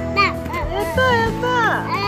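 A small child's high-pitched babbling and squealing, with one long falling squeal in the second half, over background music.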